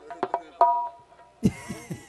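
Live hand-drum accompaniment: a quick run of strokes with a brief held melodic note, then a loud stroke about one and a half seconds in whose deep tone falls in pitch.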